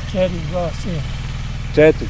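An engine idling steadily nearby: a low, even, pulsing hum under brief spoken words.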